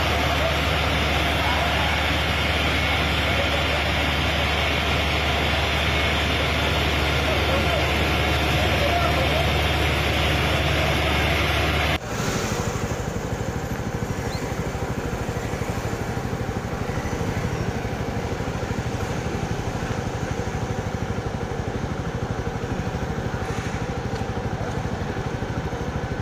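Steady engine and pump noise from fire engines at work, with voices in the background. About halfway through the sound changes abruptly to a fire engine's diesel engine idling nearby in the street.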